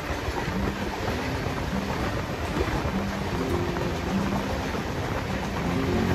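Passenger train at speed, heard from a moving coach: a steady rumble and clatter of wheels on the rails, with another passenger train passing close by on the next track.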